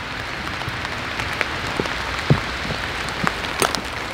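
Forest background: a steady rushing hiss with scattered faint ticks.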